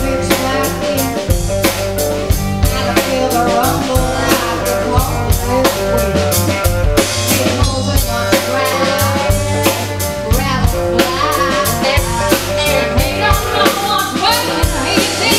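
Live rock band playing: a drum kit keeps a steady beat under electric guitars and bass guitar.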